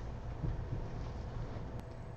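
Low, steady background rumble of room noise, with one faint click near the end.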